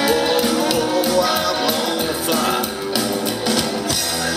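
A psychobilly band playing live: upright bass, electric guitar and drum kit, with a steady run of drum hits under the music.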